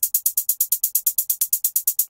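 Programmed trap hi-hats playing a fast, even run of about eight strokes a second, fed through the MAutopan auto-panner set to sweep them left and right in time with half a beat.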